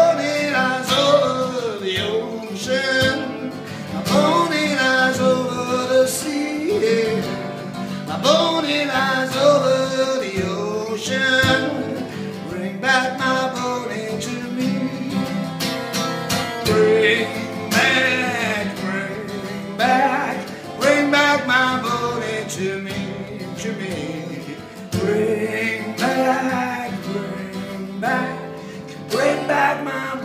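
A man singing while strumming a dreadnought acoustic guitar, voice and chords going on together throughout.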